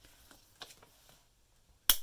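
A small magnet clasp hidden under paper circles on an envelope flap snaps shut with a single sharp click near the end. Before it, faint rustling of paper being handled.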